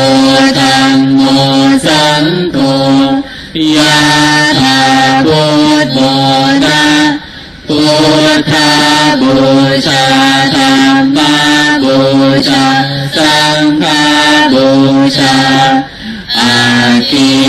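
Voices chanting a Buddhist chant on held, level pitches, in long phrases with short breaths between them and a longer pause about seven seconds in.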